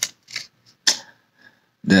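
A few short crinkles and clicks from a foil Pokémon booster pack being picked up and handled.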